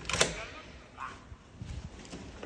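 A door's lever handle is pressed and its latch clicks sharply as the door is opened, followed by a smaller knock about a second later.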